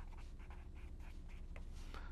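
Marker pen writing on paper: faint, short, irregular scratching strokes as the words are written, over a steady low hum.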